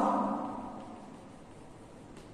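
A man's voice trails off at the start, then faint taps and scrapes of chalk on a blackboard as a dashed line is drawn, over low room noise.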